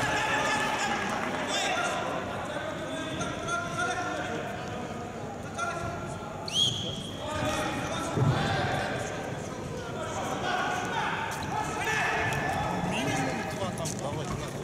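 Voices calling across a wrestling hall, with a short, rising referee's whistle blast about six and a half seconds in as the par terre exchange is stopped and the wrestlers are stood up. A dull thump follows just over a second later.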